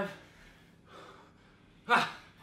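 A man breathing under exertion while holding a kettlebell goblet squat: faint breaths about half a second and a second in, then a short, sharp, loud gasp of breath near the end.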